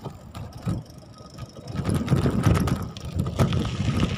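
Handling rumble and knocking of a phone riding in a moving bicycle's wire basket, with wind on the microphone.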